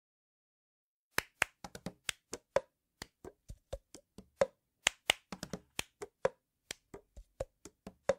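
A run of sharp, irregular clicks or taps, about four a second, starting about a second in, with dead silence between them.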